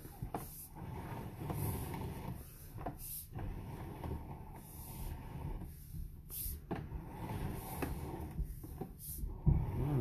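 Sewer inspection camera's push cable being pulled back out of the drain line: an irregular low rumble of cable and reel handling, with a few short clicks and knocks scattered through it.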